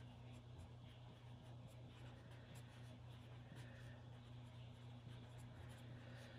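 Faint strokes of a felt-tip marker writing on poster paper, over a low steady hum.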